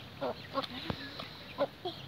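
Domestic hens clucking with short calls, four times in two seconds, while feeding on grain.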